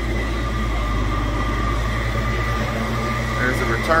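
A steady low machine hum with a thin, constant high whine over it.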